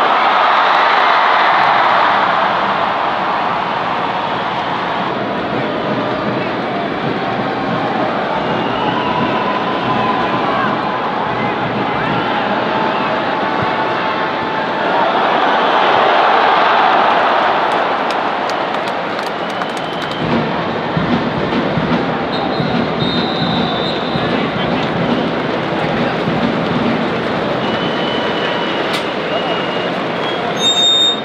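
Stadium crowd noise during a football match, a dense mass of voices that swells louder near the start and again about halfway through as a shot goes in on goal.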